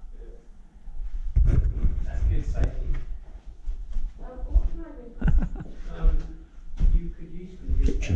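Indistinct talk that the recogniser did not catch, with low thumps and knocks mixed in.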